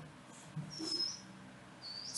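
A single faint, short, high-pitched chirp about a second in, over quiet room tone.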